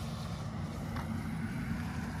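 A steady low rumble of outdoor background noise, with a faint click about a second in.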